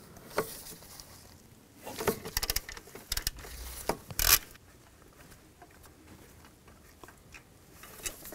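Hand ratchet with a T40 socket clicking in short runs as bolts are worked loose, with a quick string of clicks about two seconds in and a sharper single click a little after four seconds. Light rubbing and handling of tools and parts follows.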